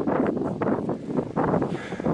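Wind buffeting the microphone, with uneven rustling of dry fallen leaves.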